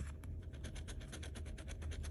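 Quick, even scraping strokes of a handheld scratcher tool rubbing the latex coating off a scratch-off lottery ticket. The coating is gummy and a little hard to scratch.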